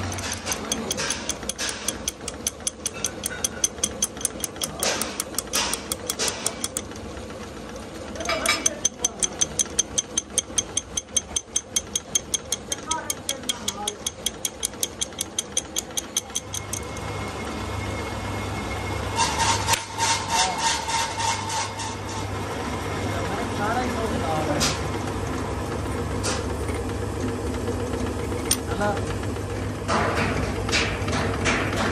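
A hand tool held against the teeth of a pinion gear turning in a lathe chuck, clicking fast and regularly, about five clicks a second, as each tooth strikes it. About halfway through the clicking stops and the lathe's motor hum takes over, with a few scattered knocks.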